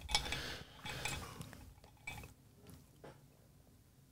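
Faint clinks and handling of glass whisky tasting glasses on a table, fading away after the first second or so.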